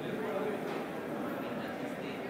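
Indistinct voices talking in the background over steady room noise.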